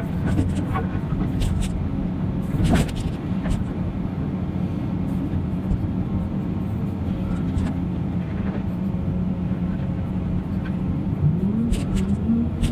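Caterpillar 336 hydraulic excavator's diesel engine running steadily under load while it digs, heard close up from the cab, with a few sharp knocks of rock and debris in the bucket. Near the end the engine pitch rises and falls briefly as the arm swings.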